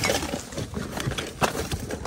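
Rummaging through a dumpster: plastic bags and a cardboard box rustling as small plastic toys are handled, with a few light clicks and knocks.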